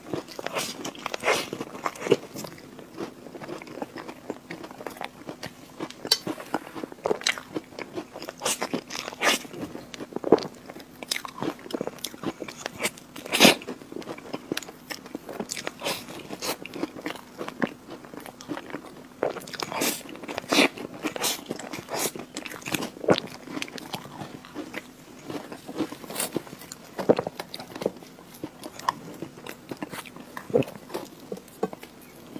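Close-up eating of an Oreo cream cake: wet chewing and smacking, with irregular crunches of Oreo cookie and sharp mouth clicks throughout. A faint steady hum sits underneath.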